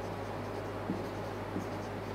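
Marker pen writing on a whiteboard: faint scratching strokes over a steady low hum.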